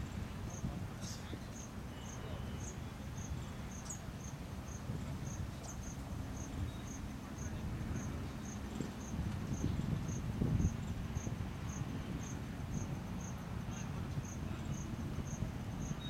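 An insect chirping: a short, high chirp repeating evenly, about two and a half times a second, over a low rumble of outdoor background noise.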